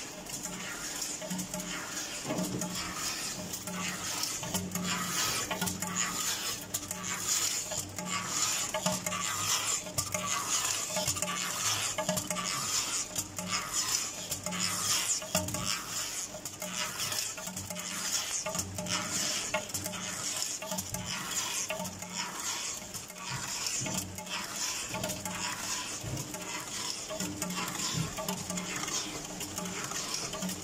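MQR10 rotary die-cutting machine running while die-cutting copper tape: a steady mechanical clatter of rapid clicks over a continuous high whine.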